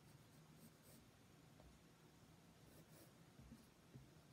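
Faint scratching of a pencil sketching lightly on sketchbook paper.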